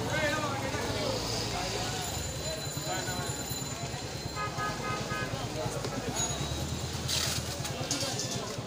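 Busy street ambience: passers-by talking over the low, steady running of vehicle engines in traffic. A short horn toot sounds about halfway through, and there is a brief noisy burst near the end.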